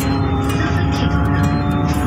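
Steady rumble of a moving road vehicle heard from inside it, with a few steady held tones running through.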